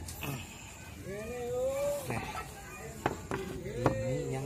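Clay roof tiles knocking together as they are fitted back into place, with a few sharp clacks near the end. A person's drawn-out voice is heard in the middle.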